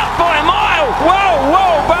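Excited cricket TV commentary, a voice rising and falling sharply in pitch, over the noise of a stadium crowd just after a wicket falls.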